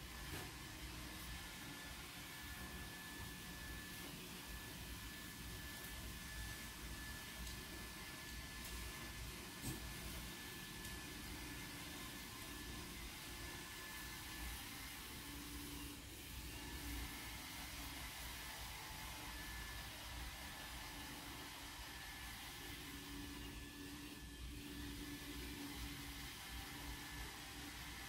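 Faint steady hiss with a low hum, like a fan or small motor running in a quiet room, with one brief soft tap about ten seconds in.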